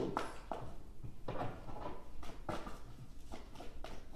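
Several light clicks and taps at irregular intervals, over a low steady hum.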